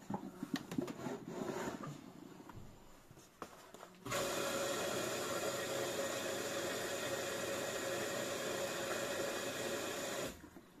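Front-loading washing machine starting its wash: a few light clicks and handling sounds, then about four seconds in a steady rush of water filling the machine starts suddenly and holds level until it cuts off just as suddenly at the end.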